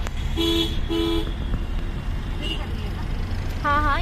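Two short toots of a vehicle horn, a little over half a second apart, over the steady low road rumble inside a moving car.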